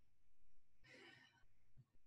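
Near silence, with one faint breath out, like a soft sigh, about a second in.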